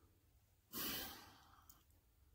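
A man's single audible breath, a short sigh-like exhale or intake lasting about half a second, a little under a second in, between otherwise near-silent pauses in speech.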